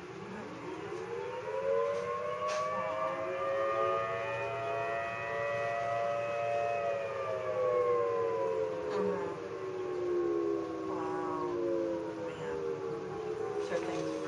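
Federal Signal Thunderbolt 1000T outdoor tornado warning sirens, more than one at different distances, sounding together. Their overlapping tones rise over the first few seconds, hold, then slowly fall from about halfway through.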